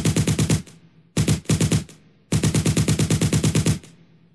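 Machine-gun fire sound effect in rapid bursts of about ten shots a second: one ending just after the start, a short one about a second in, and a longer one from about two and a half seconds to near the end, each tailing off.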